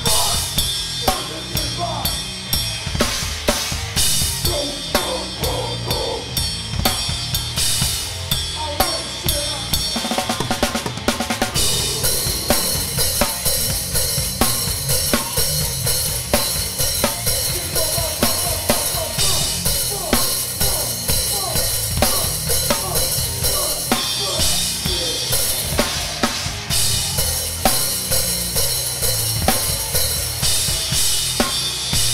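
Hardcore band playing live, heard from a close-miked drum kit: kick drum, snare and cymbals hit hard and fast over bass and guitar. A quick run of strokes about ten seconds in gives way to steady cymbal wash through the rest.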